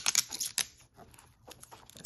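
Clear adhesive tape being unrolled and pressed around the rubber rim of a canvas sneaker: a quick run of small crackling clicks, then a few scattered ticks as the handling slows.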